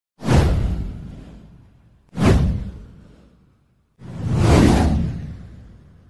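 Three whoosh sound effects of a title intro, each full of deep rumble. The first two hit suddenly about two seconds apart and fade away; the third swells up about four seconds in, then fades out.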